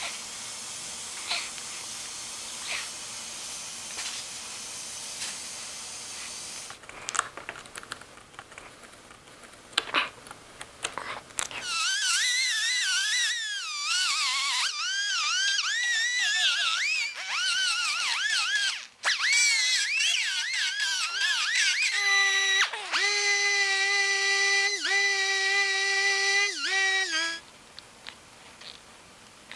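Hot-air plastic welder hissing steadily, then a die grinder with a sanding disc whining as it grinds down a built-up plastic weld. The whine's pitch dips and recovers again and again as the disc is pressed into the plastic, then holds at a steadier, lower pitch before cutting off near the end.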